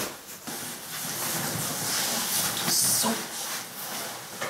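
Fabric rustling and handling noise as a jacket and backpack are put on close to the microphone.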